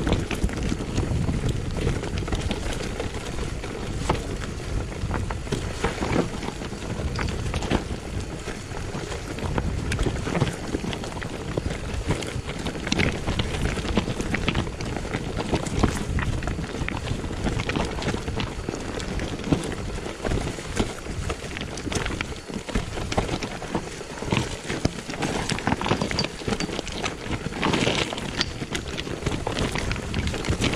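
Mountain bike descending a rocky forest trail: tyres crunching over loose stones, with frequent short knocks and rattles from the bike as it hits rocks, over a rush of wind on the microphone.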